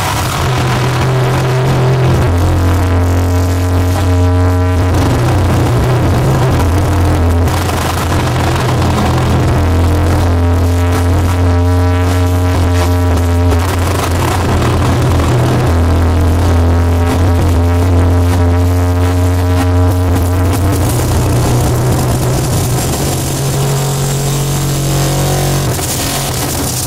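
Harsh noise played live on a table of chained guitar effects pedals and a small mixer: a loud, dense wall of distorted noise over a heavy low drone, with stacked feedback tones that switch every few seconds as the knobs are turned.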